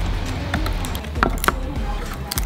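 Charred bamboo tube of khao lam being split open by hand: a few sharp cracks and splintering clicks as the bamboo gives way, over background music.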